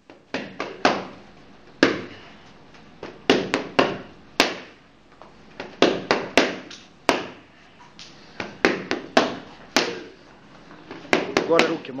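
Boxing gloves striking focus mitts in short punch combinations: sharp slaps of one to four punches at a time, around twenty in all.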